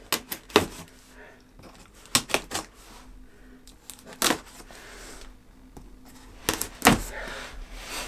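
A knife slitting packing tape on a cardboard box: irregular sharp clicks, taps and short scratchy rasps of blade, tape and cardboard, loudest near the end.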